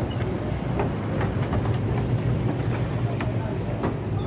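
An engine running steadily with a low hum, with faint voices of people around.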